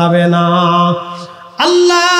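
A man's voice chanting in the melodic, sung style of a Bengali waz sermon. One long held note fades out about a second in, and after a brief pause a new, higher held note begins.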